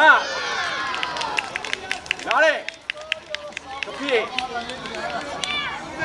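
Shouted calls at a children's football match: several drawn-out shouts that rise and fall in pitch, with a scatter of light, sharp clicks between them.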